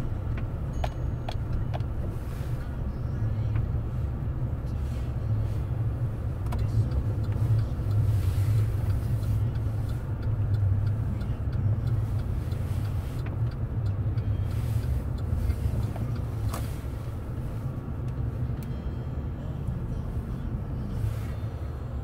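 Steady low engine and road rumble of a vehicle driving slowly, heard from inside the cabin, with a few light clicks about a second in.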